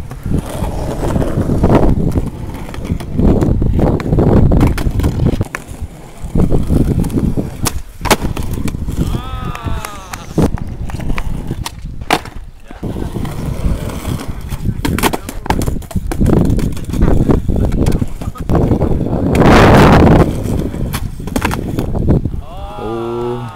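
Skateboard wheels rolling over concrete, broken by sharp clacks of the tail popping and the board slapping down as flatground flip tricks are attempted.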